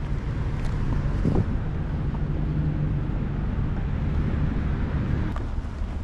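Steady low outdoor rumble of wind buffeting the microphone, mixed with traffic noise, broken by a few faint ticks.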